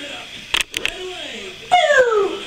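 Baby vocalizing in short rising-and-falling squeals and coos, ending in a loud squeal that slides down in pitch near the end. A few sharp clicks come between the calls, over faint background music.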